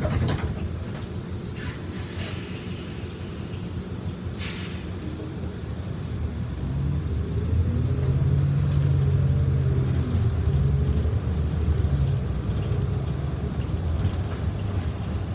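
City transit bus running along the road, heard from inside near the front: a steady low engine and road rumble. About halfway through, the engine note grows louder and its pitch moves as the bus pulls harder. A short high squeal comes near the start and a brief hiss about four seconds in.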